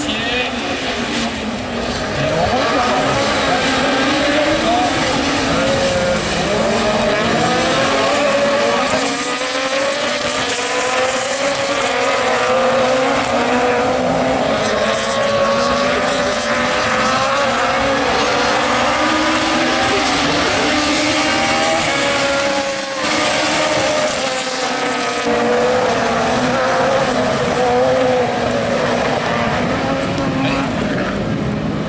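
A pack of Super 1600 rallycross cars racing, with their 1.6-litre four-cylinder engines revving hard together. Several engine pitches at once rise and fall as the cars accelerate and lift through the corners.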